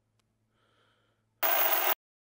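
A man breathing heavily and faintly, then, about one and a half seconds in, a loud half-second burst of hiss-like noise that cuts off suddenly.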